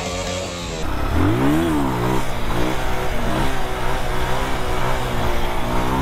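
Motorcycle engine revved once, its pitch rising and falling over about a second, then running at a steady pitch. Music is still heard for the first moment, until a sudden change under a second in.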